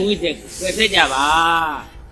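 A man's voice preaching in Burmese, with a hissing sibilant about half a second in and one long drawn-out syllable in the middle.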